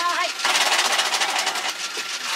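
Ice-shaving machine grinding ice into shaved ice: a loud, fast rattling grind that drops away near the end. A short voice sounds at the very start.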